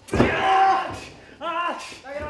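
A sharp impact in the wrestling ring right at the start, followed by a loud held yell and a second, shorter shout about a second and a half in.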